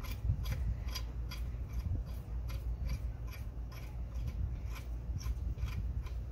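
A long half-inch steel bolt spun down by hand through a steel adapter plate into the tapped dowel-pin hole of a Ford 302 cast-iron block, its threads giving a run of light clicks and scrapes, a few a second.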